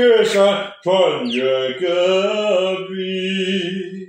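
A man singing a slow Chinese ballad unaccompanied. He holds long, drawn-out notes, pausing for breath about a second in, then sustains the next phrase steadily.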